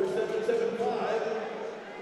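Indistinct, reverberant voice over an ice arena's public-address system, with a steady crowd murmur underneath; it fades slightly towards the end.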